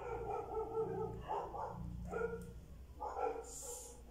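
A dog vocalising: about four drawn-out calls, the first about a second long.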